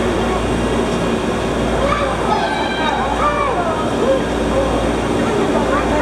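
Voices of other people talking, clearest about two to three seconds in, over a steady low rumble.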